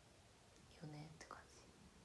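Near silence, broken about a second in by a brief, soft murmur from a young woman's voice.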